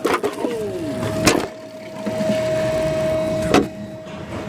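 Forklift running with a steady high hum, broken by three sharp knocks and a short falling tone about half a second in.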